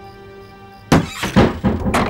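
Steady background music, then a sudden loud thud about a second in, followed by three more heavy knocks in quick succession.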